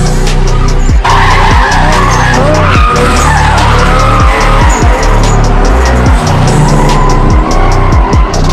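Tyres squealing as a 1JZ-engined Nissan Cefiro drifts, starting about a second in, mixed under loud electronic music with a heavy beat.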